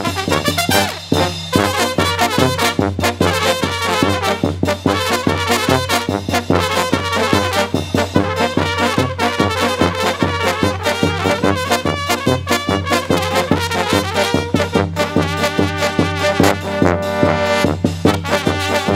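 Serbian Balkan brass band (trubački orkestar) playing a lively tune, led by trumpets and flugelhorns over a steady low bass line and a regular beat.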